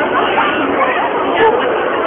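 Chatter of a dense crowd: many voices talking at once around the listener, with no single voice standing out.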